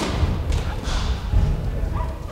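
Dull thuds of bare feet stepping and stamping on a wooden gym floor during a sports chanbara bout, with a sharp knock right at the start.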